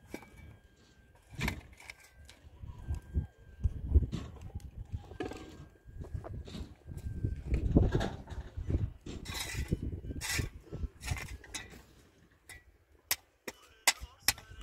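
A shovel digging into and scraping through stony soil and tossing it, in uneven strokes a second or two apart, with a few short sharp clicks of stones near the end.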